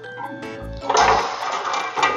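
Tin snips shearing through black sheet-metal flashing, a loud rasping cut starting about a second in, over background music.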